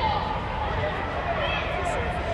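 Distant calls and shouts of youth soccer players and spectators, echoing under an inflated sports dome, over a steady low rumble.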